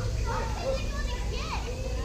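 Indistinct voices of people, children among them, talking and calling out over a steady low rumble.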